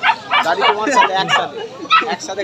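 A man talking, with the cries of a young pet animal mixed in.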